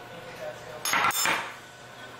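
A metal spoon and dishware clatter: one short burst of knocking and scraping about a second in, as the spoon and a glass serving dish meet the bowl and the counter.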